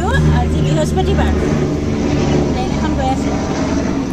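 A woman talking, with a steady low hum underneath.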